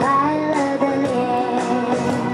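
A kindergarten children's choir singing a song in unison over instrumental accompaniment.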